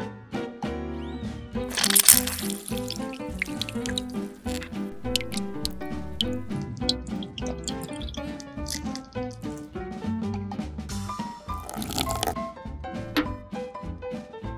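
Background music with a light, steady beat. Twice, about two seconds in and again around eleven seconds, comes a short rush of liquid, as orange juice is poured into a small glass measuring jug.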